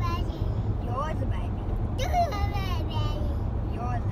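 A child's high-pitched voice in a few short bursts over the steady low rumble of road noise inside a moving car.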